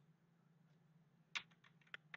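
Near silence with a faint low hum, then a sharp computer mouse click about one and a half seconds in and a fainter click near the end, as the slide show is started.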